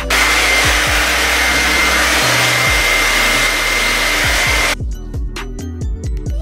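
Hair dryer with a diffuser attachment blowing on wet curly hair: a loud, steady rush of air with a thin high whine. It stops suddenly about three-quarters of the way through.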